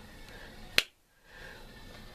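A single sharp click about a second in, over faint room noise; the sound drops out almost completely for a moment right after it.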